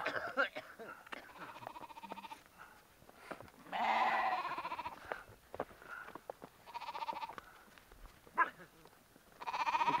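A close flock of sheep and goats bleating: several wavering calls, the loudest lasting about a second at around four seconds in, with others about seven seconds in and near the end.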